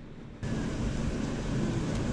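Steady outdoor rushing noise, heaviest in the low end, that comes in abruptly about half a second in and holds even, with no distinct events.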